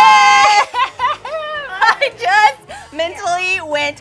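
A woman's loud, high-pitched squeal, held for about half a second, then laughing and excited wordless exclamations from women's voices, with background music with a steady beat coming in about a second in.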